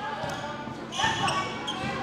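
Basketballs bouncing on a hardwood gym floor, with players' voices in the background.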